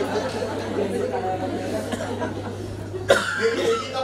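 A seated audience laughing and chattering, many voices overlapping, over a steady low electrical hum. About three seconds in there is a sharp sudden sound, and a single voice then stands out.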